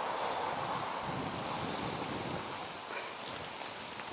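Steady rushing wind, easing slightly toward the end.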